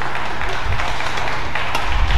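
Spectators applauding and clapping in an indoor badminton hall after a point is won, with a sharp click near the end.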